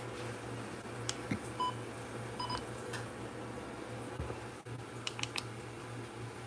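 Two short electronic beeps about a second apart from a smartphone gimbal being powered up and shaken, with a few handling clicks over a low steady hum.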